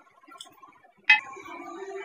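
A single sharp metal clink about a second in, from the steel king pin being worked into the truck's steering knuckle, with a few faint ticks before it. After the clink comes a steady pitched hum that steps up in pitch once.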